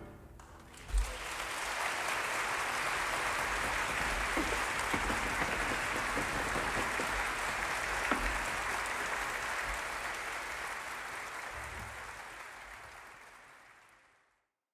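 Audience applause in a concert hall, starting about a second in after the orchestra has stopped, holding steady, then fading out near the end.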